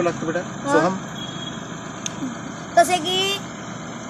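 Two short snatches of conversational speech over steady outdoor background noise.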